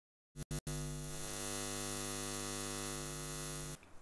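Electrical neon-sign buzzing hum sound effect: a few short flickering blips about half a second in, then a steady buzzing hum with many overtones that cuts off suddenly just before the end.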